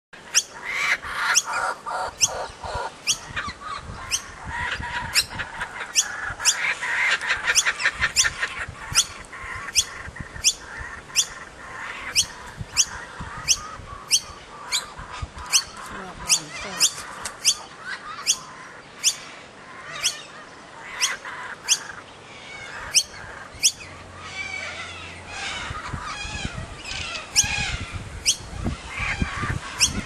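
Laughing kookaburras calling: a short, harsh call repeated a bit more than once a second throughout, the young bird begging to be fed. A rapid chuckling chatter joins it over the first eight seconds or so.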